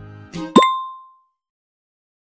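Light background music ends about half a second in with a quick upward pop and a bright, bell-like ding that rings briefly and fades out: a cartoon transition sound effect.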